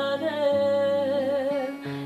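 A woman's voice holds one long note with vibrato over acoustic guitar. The note fades about two seconds in, just before the next sung phrase.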